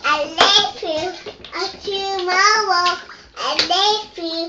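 A young child's high voice singing, the words not clear.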